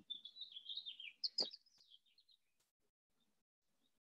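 Faint bird chirping, a quick run of short high notes with a single click partway through, stopping a little over two seconds in.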